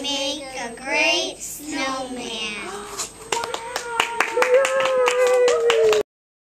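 Children's voices finishing a line together, then hand clapping starting about three seconds in, with one long held voice note running over the clapping.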